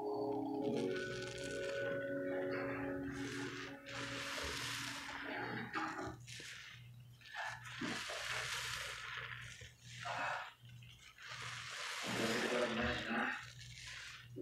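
A sponge loaded with soap foam squeezed and kneaded by hand in a basin of suds: wet squelching and crackling foam in long surges, about one every four seconds.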